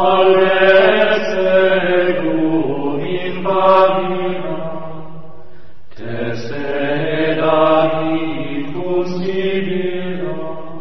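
Background music: a voice chanting a mantra in long, held notes, with a brief break about six seconds in.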